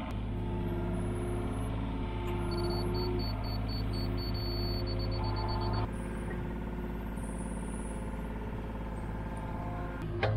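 John Deere 35G mini excavator working, its diesel engine running steadily with whining tones that come and go as it digs. The sound steps down a little about six seconds in.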